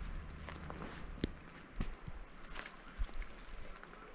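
Faint wind noise with a few short, scattered crunches and knocks as a snowboarder handles snow and shifts about in deep powder.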